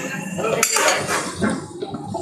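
A long ladle stirring thick gravy in a large aluminium pot, scraping and knocking against the pot's side, with a sharp clack a little past half a second in.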